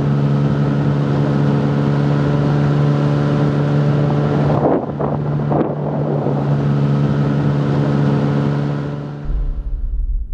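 Motorboat engine running at a steady pitch, with wind and water rushing past. The engine note dips briefly about five seconds in, then fades out near the end.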